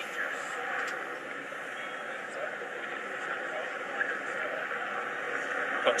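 Steady outdoor background noise with faint distant voices in it, moderately quiet and unchanging.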